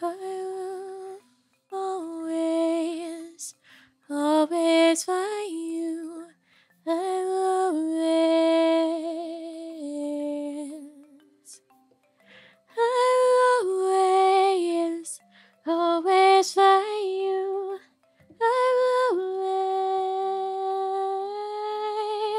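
A woman humming a slow melody in phrases of one to three seconds, with long held notes and short pauses between them.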